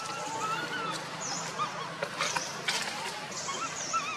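Macaque calls: a run of short, wavering, high coos, with a few light clicks among them.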